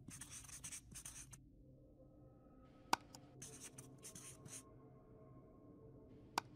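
Faint marker-pen writing sound effect: scratchy strokes in two spells, the first at the start and the second about three seconds in. A single sharp click comes just before the second spell.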